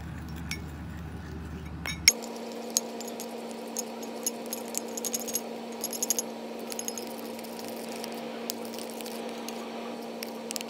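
A metal spoon stirring besan and tamarind juice into a paste in a glass bowl, clinking and scraping against the glass in irregular light ticks. A steady low hum starts suddenly about two seconds in and continues underneath.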